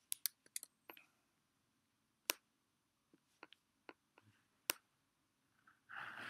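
Computer clicking, as the pointer drags and scales a layer on screen: a quick cluster of sharp clicks in the first second, then single clicks at about two seconds and near five seconds, with a few fainter ticks between.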